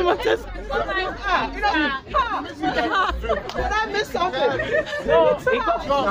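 Speech only: people talking loudly, voices overlapping in lively group chatter.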